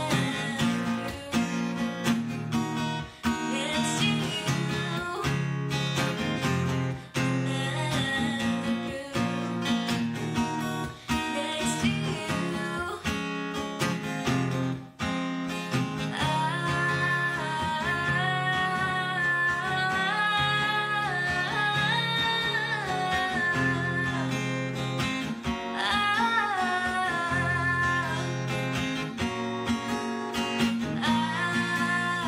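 A woman singing over a strummed acoustic guitar, with long held sung notes in the second half.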